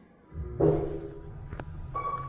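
A low steady hum from the Kone EcoSpace machine-room-less traction elevator starts a fraction of a second in, as the car sets off. A short pitched sound and a click follow, and a steady beep-like tone begins near the end.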